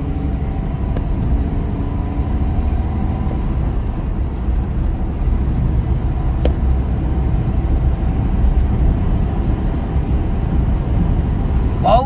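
Cabin noise of a Renault Kwid gaining speed at around 90 km/h: a steady low rumble of road and engine from its freshly overhauled three-cylinder petrol engine, rising slightly in level.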